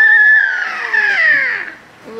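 A young child's long, high-pitched vocal squeal, held steady at first, then sliding down in pitch and fading out near the end.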